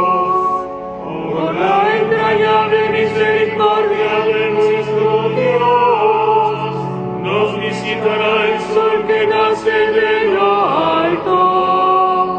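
Chanted liturgical singing: slow melodic phrases of several seconds with long held notes and short breaks between phrases.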